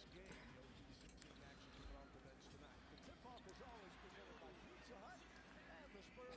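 Near silence: basketball game broadcast audio playing very faintly, with a few short, faint squeaky glides in the middle and toward the end.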